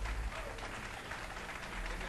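Concert audience applauding after a song ends, with the band's last low bass note dying away just after the start.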